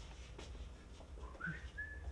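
A person whistling faintly: the note slides up about a second in, then holds a higher note. A couple of faint knocks come before it.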